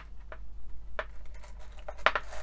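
Small beads clicking against a glass dish as fingers try to pick them out: a few short, scattered clicks.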